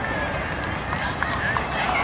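Indistinct voices of players and spectators at a youth baseball game, with faint scattered calls over a steady low outdoor rumble.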